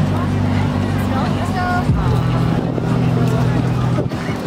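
Deep, sustained droning chord from the lion sculpture's ambient soundscape, its low notes shifting to a new chord about halfway through, with crowd chatter around it.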